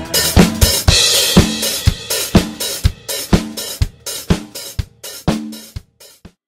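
Mapex acoustic drum kit playing a steady beat, about two strokes a second: bass drum and snare, with hi-hat and cymbal, and a crash about a second in. The playing fades steadily away as the song ends.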